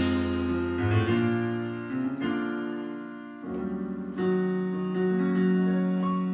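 Electronic keyboard playing slow, sustained chords with no singing, the harmony moving to a new chord every second or so.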